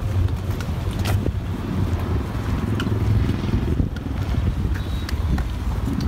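Wind buffeting the microphone as a low, uneven rumble, with one sharp click about a second in.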